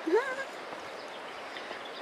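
A short rising vocal sound near the start, then a steady, even outdoor background hiss with nothing distinct in it.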